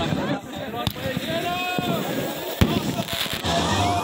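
Fireworks going off outdoors, with sharp bangs about a second in and again past halfway, among people's voices calling out. Music comes in near the end.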